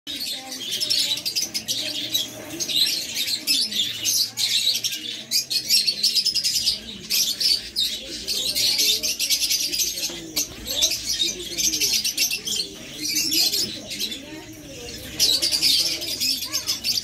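A small caged flock of lovebirds, peach-faced lovebird mutations and Fischer's lovebirds, chattering constantly with shrill, rapid chirps. The chatter swells and fades in waves, with brief lulls about ten and fourteen seconds in.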